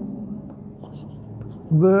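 Chalk writing on a blackboard: faint scratches and a few light taps as the strokes go on.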